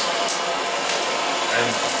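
BBT-1 high-output butane culinary torch burning with its flame turned up high, giving a steady hiss.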